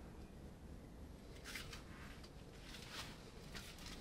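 Faint scratching from a thin stick worked through wet acrylic paint at the edge of a canvas, in short bursts about one and a half seconds in and again around three seconds, over low room noise.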